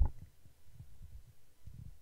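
A sharp low thump right at the start, then faint, irregular low thuds and rumble.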